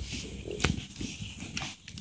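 Handling noise from a phone being moved: fabric rubbing and brushing against the microphone, with a single sharp knock about two thirds of a second in.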